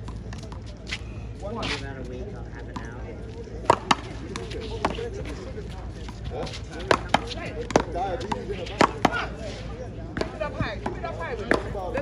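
Paddleball rally: a rubber ball struck by paddles and bouncing off a concrete wall, giving sharp hits at irregular intervals. The loudest are a quick pair about four seconds in, followed by a run of hits between about seven and nine seconds.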